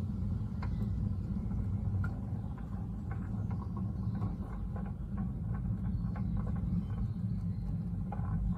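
Wooden sliding gate rolling along its track as it opens, driven by a GIBIDI SL544 24 V DC electromechanical operator: a steady low rumble with faint scattered ticks.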